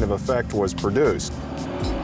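A man speaking over background music; about a second in, the talk stops and only the steady music bed is left.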